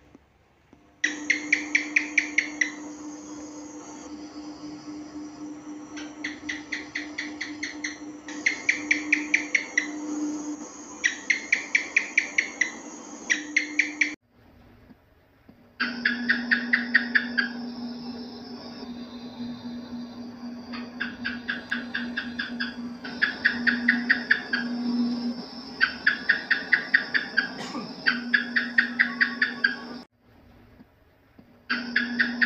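House geckos chirping in repeated rapid trains of clicks, about eight a second, each train lasting a second or two, over a steady low hum. The calls stop briefly just after the start and again for about a second and a half halfway through.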